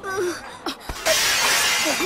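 A couple of sharp knocks, then a loud shattering crash about a second in that lasts most of a second.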